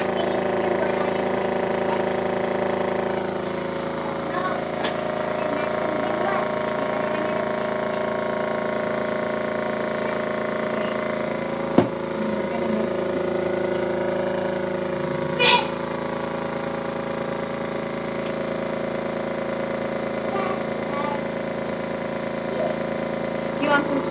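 Small airbrush compressor running with a steady hum while the airbrush sprays tattoo paint through a stencil onto skin. A single sharp tap sounds about halfway through.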